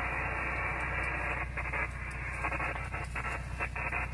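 Single-sideband receiver audio from a shortwave transceiver: a steady hiss of band noise cut off sharply above about 3 kHz, with weak, broken fragments of a distant station's signal coming through the noise in the second half.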